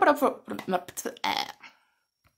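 A woman's voice making a string of short, wordless vocal sounds and mumbles in several brief pieces, which stop shortly before the end.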